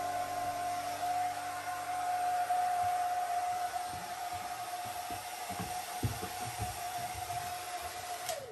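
Handheld hair dryer running steadily: a constant whine over a rush of air. A few soft low thumps in the second half, the loudest about six seconds in.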